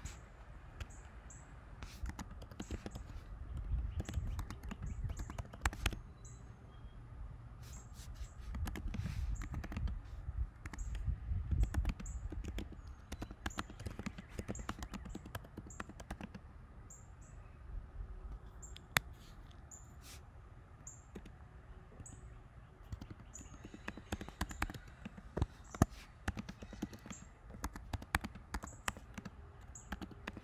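Computer keyboard typing: keys clicking in quick, irregular runs as a sentence is typed out. A low rumble sits under the keystrokes for several seconds in the first half.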